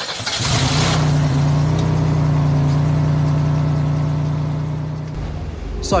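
A motor vehicle's engine running at a steady pitch, after a loud rush of noise in the first second; it cuts off suddenly about five seconds in.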